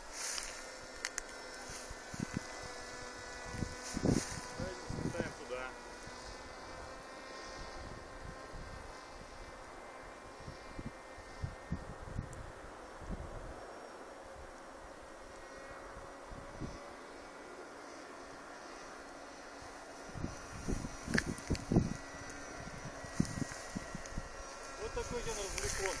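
Electric motor and propeller of a radio-controlled flying-wing model plane buzzing at a steady pitch in the distance, fading out about two-thirds of the way through. Wind buffets the microphone now and then.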